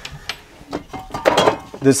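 A few short knocks and clinks of metal aerosol spray cans being moved on a cabinet shelf as one is picked out.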